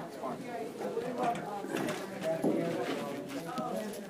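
Murmur of several people talking quietly at once in a room, no single voice standing out, with a few light knocks and clicks scattered through it.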